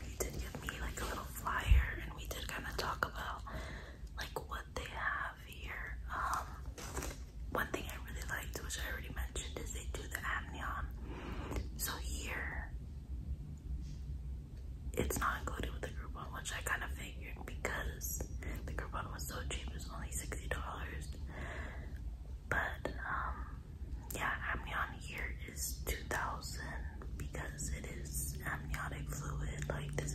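A woman whispering to the camera, with a pause of a couple of seconds about halfway, over a low steady hum. A single sharp thump about two seconds in.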